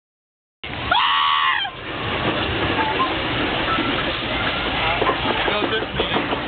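A short, loud honking tone about a second in, lasting under a second, then a steady noisy background with faint voices.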